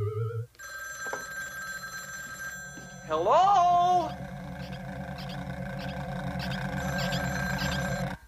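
Synthesized electronic sound effect: trilling, ringing tones like an electronic phone ring over a low pulsing hum, with a loud rising, wavering sweep about three seconds in. It cuts off suddenly at the end.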